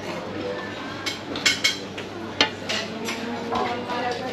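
Metal serving tongs clinking against enamelled serving pots as sausages are picked up: a few sharp clinks over a background murmur of voices.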